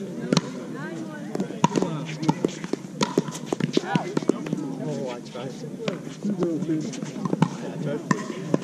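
Pickleball paddles popping against a plastic ball in a rally, sharp hits about once a second, with people talking in the background.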